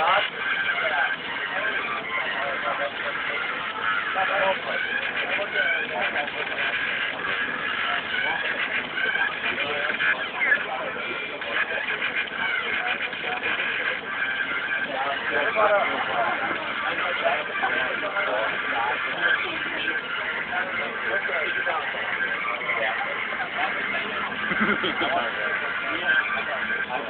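Inside a moving bus, a steady babble of many passengers talking at once mixes with the bus's running and road noise.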